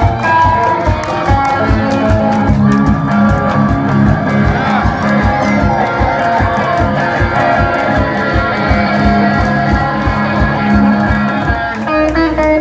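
Hollow-body electric guitar played without vocals over a fast, steady kick beat from a suitcase drum, about four thumps a second.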